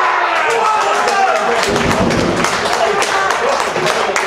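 A small group of voices shouting and cheering at a goal, in a ground without a crowd, with hand clapping joining in from about a second in.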